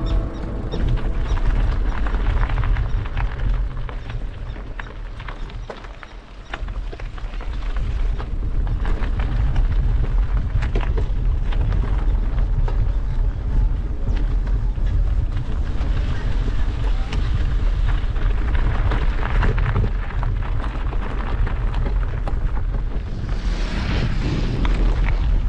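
Wind buffeting the camera microphone outdoors: a loud, steady low rumble with scattered knocks, easing briefly about five seconds in.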